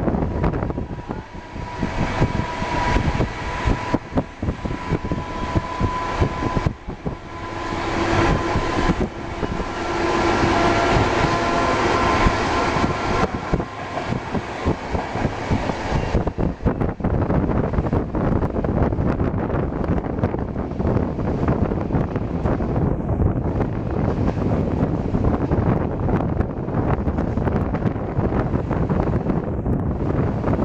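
Passenger train running, heard from an open coach window: rumble of wheels on the track and wind on the microphone, with steady whining tones through the first half that then fade into the noise.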